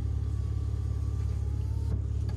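Maserati Ghibli S's twin-turbo V6 idling, heard inside the cabin as a steady low rumble. Over it, a faint thin whine from the electric motor of the rear-window sunshade as it raises the shade.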